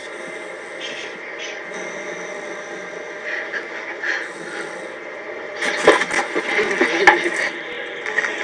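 Steady drone of a private jet's cabin in flight. About six seconds in come a couple of seconds of knocks and rustling.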